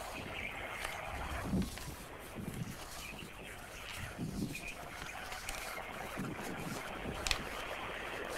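Faint wind and water rush off a choppy sea, with a brief sharp click about seven seconds in.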